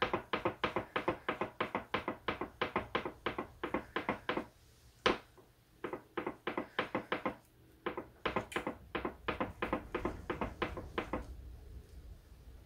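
A wet raw-fleece lock scrubbed back and forth on a bar of soap in a small dish to wash the grease out, making quick rhythmic rubbing strokes about four or five a second. The strokes pause twice, with a single sharper click about five seconds in.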